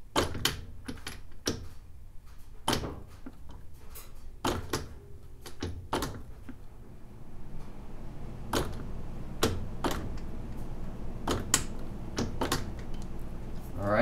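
Irregular metallic clicks and knocks from a breaker bar on the flywheel nut as the crankshaft of a Kawasaki KX250 two-stroke single is rolled back and forth by hand, squashing solder between the piston and the cylinder head.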